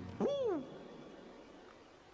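A cartoon dog's single short whine, its pitch rising then falling, about a quarter of a second in.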